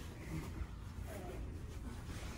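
Quiet room noise with a steady low rumble and a faint voice murmuring in the background.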